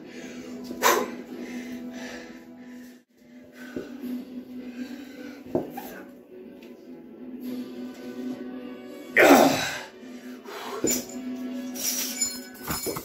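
Background music with a steady low tone while a Power Twister steel spring bar is bent under strain, with a few short clicks from the spring. About nine seconds in comes a loud strained cry falling in pitch, the loudest sound.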